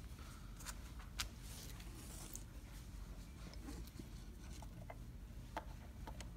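A few faint, light clicks of small metal snap parts being picked up from a wooden table and set into the die of a hand snap press, the clearest about a second in, over low steady room noise.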